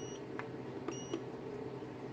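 Quiet button clicks on a portable power station as its light is switched to another mode, with a faint high-pitched electronic whine that cuts out, returns briefly about a second in, and cuts out again, over a low steady hum.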